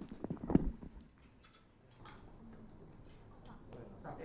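A few light clicks and knocks in the first second as string players raise their instruments and get ready to play, then only quiet room sound heard over a video-call link.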